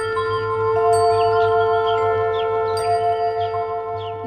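Opening title music of a TV programme: long ringing notes layered over a low held drone, with new bell-like notes coming in one after another.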